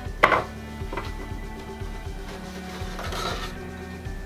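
A sharp wooden knock as wooden wine crates are shifted on a shelf, a lighter knock about a second later, then a paper rustle as a sheet is drawn out, over steady background music.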